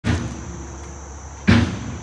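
Steady high-pitched drone of insects in the surrounding trees and grass. A sudden thump about one and a half seconds in is the loudest sound.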